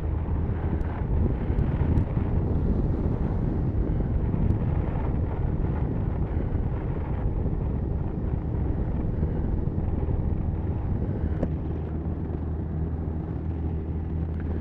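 Motorcycle engine running steadily at cruising speed, a low even hum, with wind rushing past the microphone.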